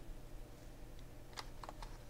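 A few light, quick clicks of a hard plastic blister pack being handled and turned over in the hands, bunched together about a second and a half in.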